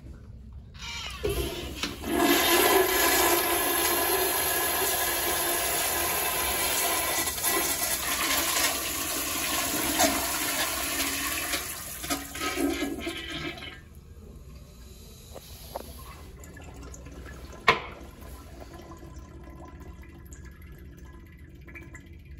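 American Standard Cadet toilet on a flushometer valve flushing: a strong rush of water starts about a second in and runs for about twelve seconds, then drops to a quieter trickle as the flow stops. A single sharp knock comes a few seconds after the rush ends.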